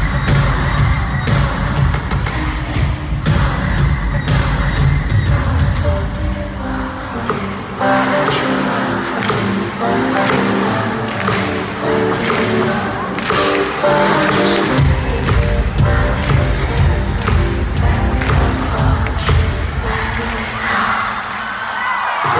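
Live pop music played over an arena sound system, recorded from the stands. A heavy bass beat drops out about six seconds in, leaving a pitched melodic passage, and comes back in about fifteen seconds in.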